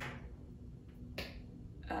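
Two short, sharp clicks about a second apart, each with a brief fading tail.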